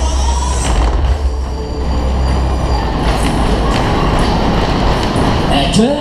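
Cars of a Kalbfleisch Berg-und-Talbahn (Musik-Express-type ride) running at speed round the hilly circular track: a loud, steady rumble of wheels on rails with rattling and rushing air, heavy in the low end for the first few seconds.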